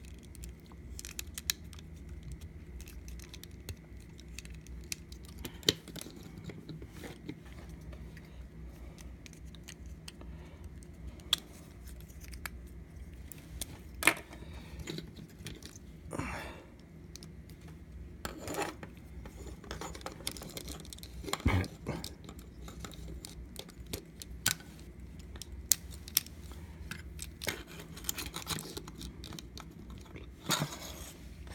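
Plastic action figures handled and posed by hand: scattered sharp clicks and snaps of plastic parts and joints, with a few short scraping rubs, over a steady low hum.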